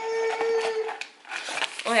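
A woman's brief held hum, then light crinkling of single-serve drink-mix packets being handled, about a second in.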